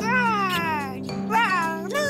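A cartoon baby's wordless voice over background music: a long call falling in pitch, then a shorter call that rises and falls near the end.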